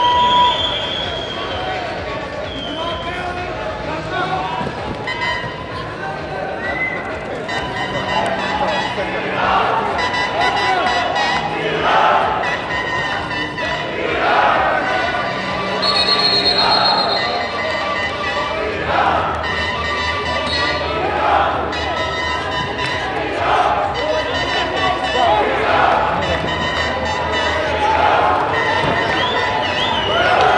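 Arena crowd noise, with a rhythmic chant and clapping of about one beat a second building from about eight seconds in.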